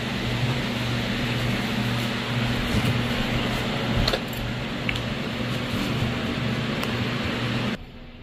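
Steady hum and whoosh of a running fan, with a light knock about four seconds in; the sound cuts off suddenly near the end.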